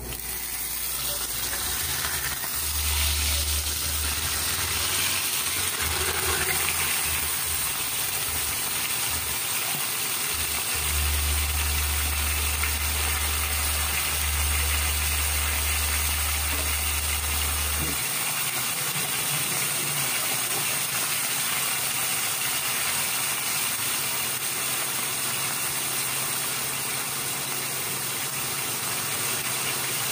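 Stuffed squid frying in hot oil in a pan, a steady sizzle. A low hum comes and goes under it and stops about 18 seconds in.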